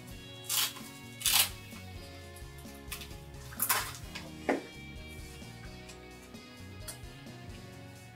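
Handling noise from the LED modules being pulled out of a fabric light-therapy wrap: four brief scraping bursts in the first half, over quiet background music.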